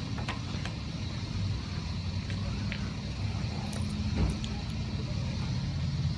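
A motor vehicle engine running steadily with a low hum, with a few faint clicks.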